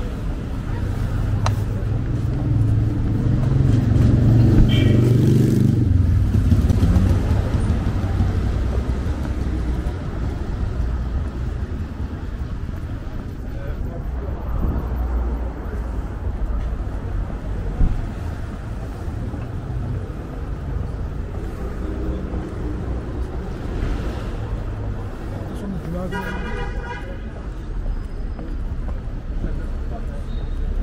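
City street traffic: cars driving past close by, with a low engine rumble that swells and fades around four to six seconds in, under passers-by talking.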